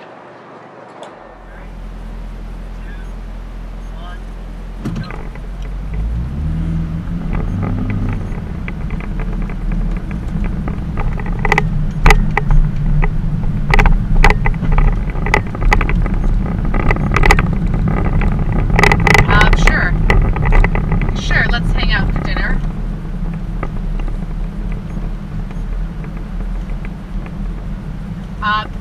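Car heard from inside the cabin: a low rumble that swells and rises in pitch as it pulls away and gathers speed, then carries on steadily. Through the middle stretch a run of sharp clicks and knocks sits over it.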